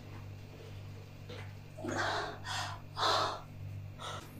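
A woman's loud, breathy gasps of strain, three short outbursts between about two and three and a half seconds in, while she squeezes a watermelon between her thighs.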